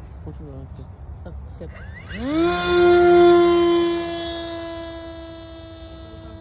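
Small fixed-wing UAV's motor and propeller spooling up to full throttle for takeoff. About two seconds in, a whine rises sharply, then holds one steady pitch. It is loudest for a second or so, then fades as the plane heads away.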